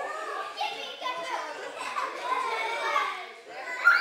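Young children chattering and calling out during play, with a sudden loud, rising high-pitched shout from a child just before the end.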